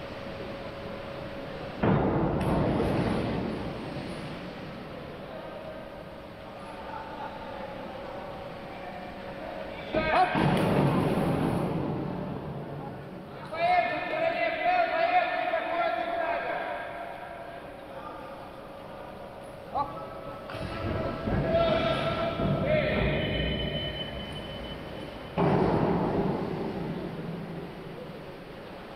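Divers entering the water of an indoor pool: three loud splashes, about two seconds in, about ten seconds in and near the end, each echoing around the hall as it dies away.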